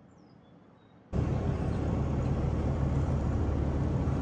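Near quiet for about a second, then the sound cuts in suddenly: steady driving noise of a slow-moving pickup truck, engine and tyre rumble with wind hiss.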